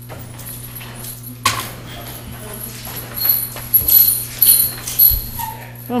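Courtroom room noise over a steady electrical hum: a single knock about a second and a half in, then a run of irregular knocks and shuffling handling noises in the middle.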